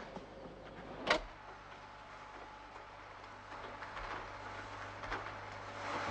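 A brief sharp sound about a second in, then an upright electric vacuum cleaner running, growing louder toward the end.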